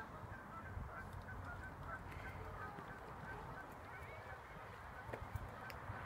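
Canada geese calling: a steady run of short, soft calls, about three or four a second.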